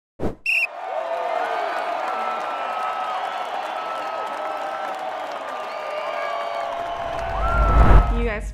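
Edited-in sound effects: a sharp hit followed by a short bright sting, then several seconds of busy, arena-like noise with overlapping gliding tones. It ends in a low rising whoosh that swells near the end.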